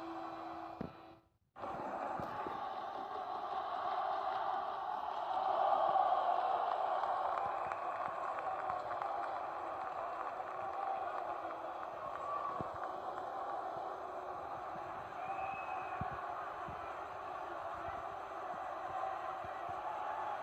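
A short music sting cuts off about a second in; after a brief gap, steady arena crowd noise, an even hum of many voices, fills the rest.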